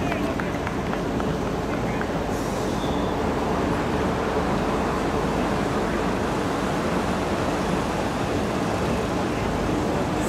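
Outdoor mini-football match ambience: scattered voices of players and spectators under a steady rushing noise, with a few sharp knocks in the first two seconds.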